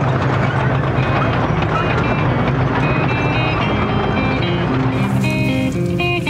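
Loud, dense rumble with a steady low drone, fading in the last second or so as guitar music with clear picked notes comes in through the second half and takes over.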